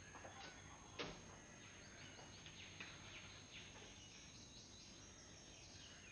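Near silence: faint room tone with a steady high-pitched whine and a few soft scattered ticks, the clearest about a second in.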